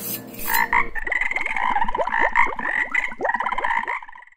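Frogs croaking in a chorus: a fast pulsing call with many quick falling chirps under it, starting about half a second in.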